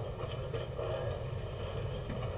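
A low, steady background rumble, with no speech.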